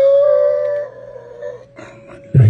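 A man's long, high-pitched drawn-out laugh, held for about a second and a half and then fading away.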